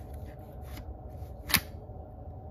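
Plastic battery tray of a Wildgame Innovations Cloak Lightsout trail camera being slid into the camera body with faint plastic rustling, then latching with one sharp click about one and a half seconds in.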